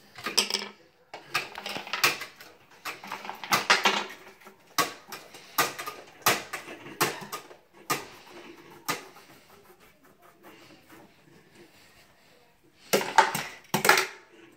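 Crayons and a small toy car tapping and knocking on a children's tabletop: irregular sharp clicks, often several a second, thinning out past the middle and returning in a quick cluster near the end.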